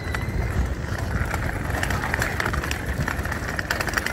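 Wheels of a hand-pushed delivery cart rattling steadily as it is rolled over brick paving.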